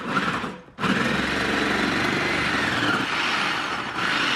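Electric food processor chopping frozen squid bodies pushed down its feed chute: a short run, a brief stop just under a second in, then steady running.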